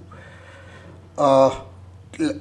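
A man's single short, drawn-out hesitation sound, one held vocal tone about a second in lasting about a third of a second, over a steady low electrical hum.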